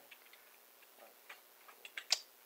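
Near silence: room tone with a few faint clicks in the second half.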